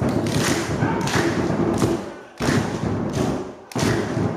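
Fast, dense drumming on a large drum, with sharper accented strokes roughly every second; it breaks off briefly about two seconds in and again near the end, resuming each time.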